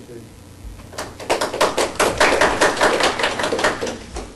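A small audience applauding at the end of a talk, the claps starting about a second in and stopping just before the end.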